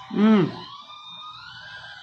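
A single short vocal call from a person, its pitch rising and then falling, lasting about half a second near the start. A faint, slowly rising tone and steady faint tones continue underneath.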